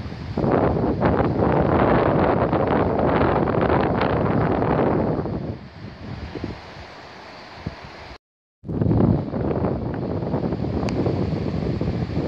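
Wind buffeting the microphone in rough, irregular gusts, loud for the first five seconds, easing, then loud again. The sound cuts out completely for a split second about eight seconds in.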